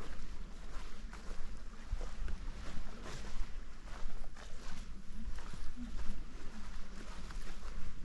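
Footsteps on a thick layer of fallen redwood needles and bark litter, an irregular run of soft crunchy steps, over a steady low rumble on the microphone.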